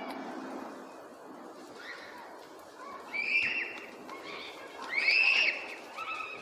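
Two shrill, high-pitched cries, each held for about half a second, one about three seconds in and a louder one about five seconds in, over a steady background hum.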